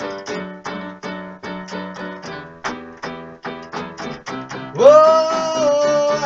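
Electronic keyboard on a piano sound playing a steady run of repeated chords, about three a second. Near the end a man's voice comes in over it with one long held sung note, the loudest part.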